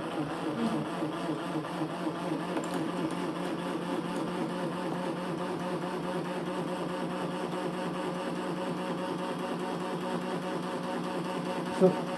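Homemade battery-driven generator running, its rotor spinning steadily: a steady whir with a fast, even pulsing.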